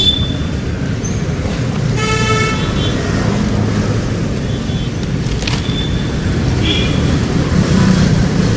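Steady road traffic rumble with a vehicle horn sounding once, about two seconds in, for just under a second.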